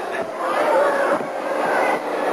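Indistinct voices over a steady wash of background noise.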